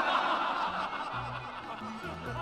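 Men laughing and chuckling together, loudest at the start, over background music with low held notes.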